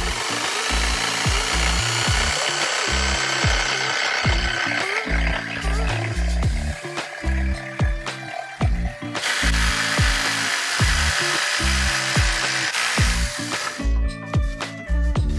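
Corded jigsaw cutting through a wooden board, a dense buzzing saw noise that starts abruptly, eases a little midway, picks up again and dies away shortly before the end. Background music with a steady bass beat plays throughout.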